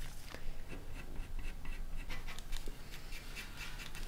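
Coloured pencil, a Derwent Drawing pencil, scratching on paper in short, quick strokes, several a second.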